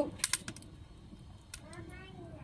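Two quick, sharp clicks about a quarter second in as the sauce bottles are handled over the wok. A faint voice follows near the end.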